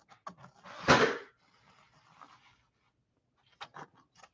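Pencil drawing on a canvas panel, a faint scratchy rustle of graphite on the surface, with a short loud breath about a second in and a few small clicks near the end.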